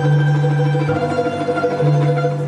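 Balalaika playing a slow melody over piano accompaniment, with notes held under a sustained low bass note.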